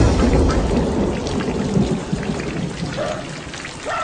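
Steady crackling, rain-like noise with a low rumble at first that dies away, the whole sound slowly growing quieter.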